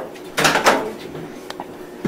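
Microwave oven door being opened: a quick clunk and rattle in two strokes about half a second in, then a faint click.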